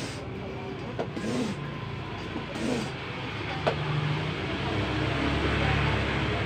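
High-pressure hand pump being stroked to fill a PCP air rifle, with a rough hiss of air through the pump that grows louder, and an occasional sharp click.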